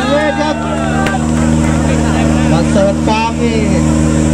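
Engine of a tube-frame 4x4 off-road competition buggy idling steadily, with a man's voice talking over it.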